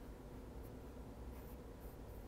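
Pencil scratching faintly on paper in a few short strokes, sketching, over a low steady room hum.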